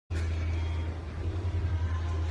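Muffled amplified rock band rehearsing out of sight. What comes through is mostly a steady deep drone of bass and guitar, heard from a corridor. The sound cuts in just after a brief dropout at the very start.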